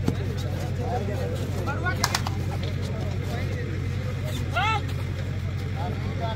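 Players and spectators at a kabaddi raid shouting in short calls, twice, with a sharp slap or clap about two seconds in, over a steady low hum.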